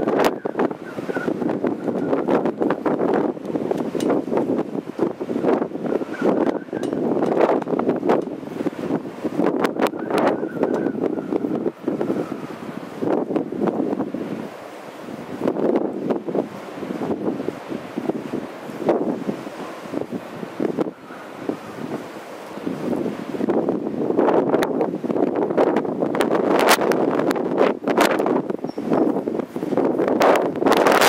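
Wind blowing across the microphone, an uneven rushing noise with frequent crackles and knocks.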